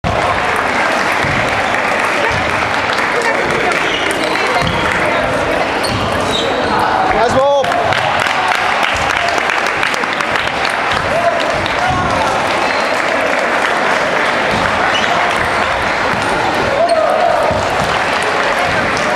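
Busy table tennis hall: celluloid balls click off tables and bats across the hall under steady chatter from players and spectators. One short, loud shout comes about seven and a half seconds in.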